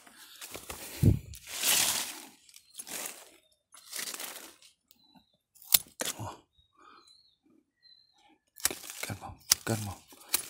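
Leaves and twigs of a young pomelo tree rustling and crackling in bursts as the branches are handled and pushed aside, with a few sharp clicks from pruning shears snipping, about six seconds in and again near the end.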